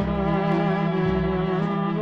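Dance orchestra playing a slow, sentimental instrumental passage: held melody notes with vibrato over a bass line that moves about twice a second.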